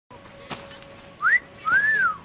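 A person's two-note wolf whistle: a short rising whistle, then a longer one that rises and falls away, after a faint click.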